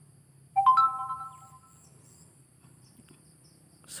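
A single bright chime-like ring about half a second in, sounding several clear tones together and fading away over about a second.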